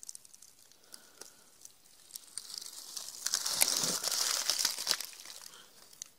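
Rustling and crinkling of dry oak leaves and the armor's fabric cover as the shot Level IIIA soft body armor panel is picked up and handled, building about two seconds in and easing off near the end.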